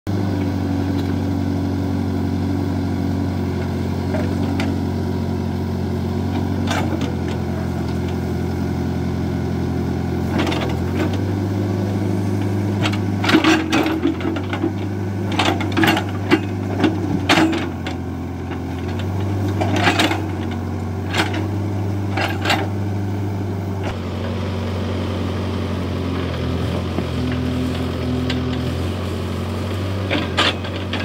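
Case backhoe loader's diesel engine running steadily, its pitch shifting now and then as the hydraulics take load. The bucket scrapes and knocks against soil and stones in clusters of sharp clicks about halfway through and again a few seconds later.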